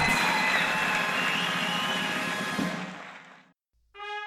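Audience applause and cheering sound effect fading out over about three seconds and ending just before the next announcement.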